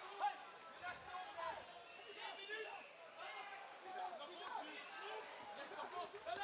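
Faint voices in an arena: scattered shouts and calls from the crowd over a low background hubbub.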